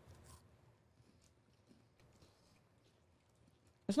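Faint, scattered crunching of people chewing a key lime Kit Kat chocolate wafer bar: a few soft irregular clicks over quiet room tone.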